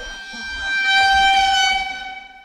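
A horn blast: one steady held tone with strong overtones that swells to its loudest about a second in, then fades away.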